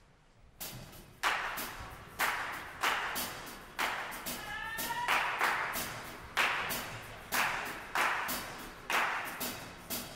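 Stage music made of sharp percussive strikes, about one every two-thirds of a second, each ringing on briefly in the hall. A short high-pitched note sounds about halfway through.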